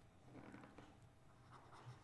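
Faint scratching of a stylus writing on a tablet, a few short strokes as letters are drawn; otherwise near silence.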